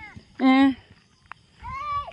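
A person shouts a short "oei!" once, then a higher-pitched call rises in pitch near the end.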